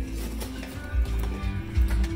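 Music with strong, pulsing bass playing through a car stereo, its low end carried by a newly installed JL Audio Stealthbox subwoofer.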